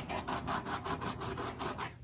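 Small handheld butane torch flame hissing with a rapid, raspy flutter as it is played over the wet acrylic pour paint to bring up cells and pop bubbles, cutting out near the end.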